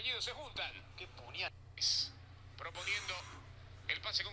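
Faint male speech: a football commentator's narration on the match footage. A steady low hum runs underneath.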